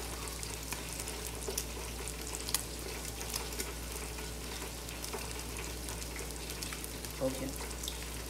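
Food frying in a pan: a steady sizzle with scattered sharp crackles, and a spoon stirring in the pan.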